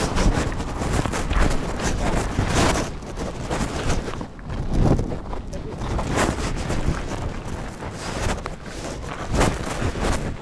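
Wind buffeting the microphone, a steady low rumble that swells and dips, with rustling handling noise over it.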